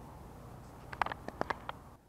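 A quick run of six or seven small sharp clicks and taps in under a second, from hands handling a spinning rod, reel and jighead while getting a rigged soft plastic bait ready to cast.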